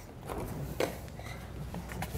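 Refrigerator door being opened: a faint click just under a second in, over a low steady hum.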